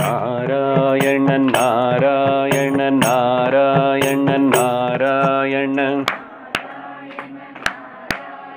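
A man singing a devotional chant to a Carnatic-style melody, his voice wavering in pitch, with a hand cymbal struck in time about twice a second. The singing stops about six seconds in, leaving a few separate sharp strikes.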